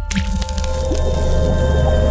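Animated logo sting: a liquid drip-and-squish sound effect over a musical hit with a deep, steady bass and held tones, starting with a sudden splashy attack.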